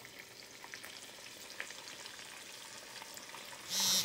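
Battered catfish deep-frying in a pot of hot oil: a faint, steady sizzle dotted with small crackles. Near the end a short, much louder burst of sound cuts in.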